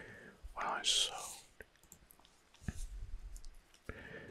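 A man whispering softly close to the microphone, with small mouth clicks. A low bump comes a little under three seconds in.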